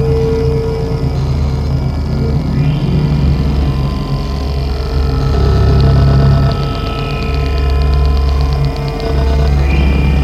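Experimental noise music: a loud, dense low drone under several sustained tones, with short rising glides and a rapid high ticking pulse that comes in about two-thirds of the way through.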